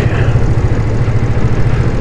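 Motorcycle engine running steadily under way, a continuous low pulsing hum, with wind and road noise over it.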